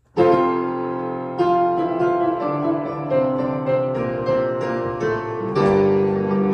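Piano accompaniment playing an introduction: sustained chords that start suddenly, with a new chord every second or so.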